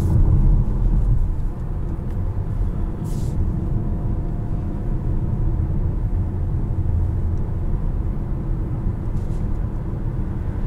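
Inside the cabin of a 2021 Mazda CX-5 driving on a road: a steady low rumble of its 2.5-litre turbo four-cylinder and tyre noise, a little louder in the first second. There is a brief hiss about three seconds in.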